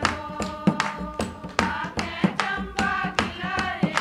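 A group of women singing a Pahari folk song together, with a dholak drum and hand clapping keeping a steady beat of about three strokes a second.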